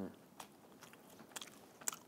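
A person chewing a mouthful of chicken with the mouth closed: faint, with a few soft mouth clicks, the loudest near the end.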